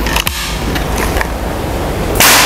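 A few short, sharp clicks from a PCP air rifle's action as a pellet is loaded into the breech and the rifle is readied to fire, over a steady low hum.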